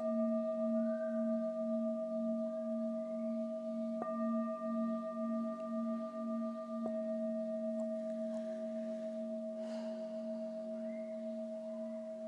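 Singing bowl struck and left ringing: a low pulsing hum with several higher overtones, slowly fading, struck once more about four seconds in. It marks the close of a guided meditation.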